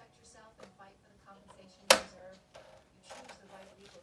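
A single sharp knock about two seconds in, against soft voices and handling sounds.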